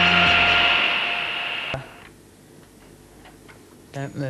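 The end of a synthesizer theme tune: its held notes stop just after the start, while a rising whooshing sweep carries on and cuts off with a click a little before two seconds in. Faint ticking follows.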